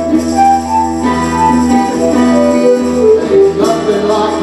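A live band playing an instrumental passage: a melodic lead line of held notes over a steady bass, with tambourine.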